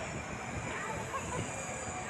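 Players and onlookers calling out at a distance on a football pitch, a few short shouts over a steady low rumble.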